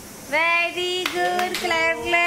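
Singing with held notes, a child's voice leading and a second voice joining near the end, with two sharp hand claps about a second and a second and a half in.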